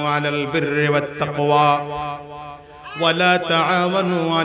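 A man's voice chanting in long, held melodic notes through a public-address system. The voice drops away briefly about two and a half seconds in, then comes back strongly.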